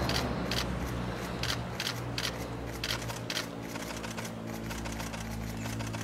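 Camera shutters clicking in irregular single clicks and short pairs, over a steady low hum.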